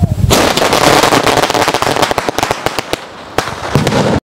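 Sky shot fireworks going off: a dense, rapid run of cracks and bangs lasting about three seconds, thinning to a few scattered cracks near the end.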